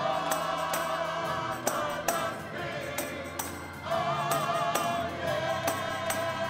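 Gospel church music: a drawbar organ and a digital piano playing, with voices holding long wavering notes over steady sharp percussion hits on the beat.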